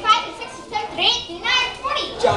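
Children's high-pitched voices calling out, with rising cries about a second in.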